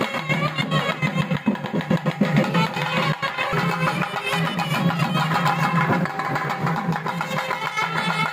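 Nadaswaram playing an ornamented melody with sliding, wavering pitch over a steady low drone.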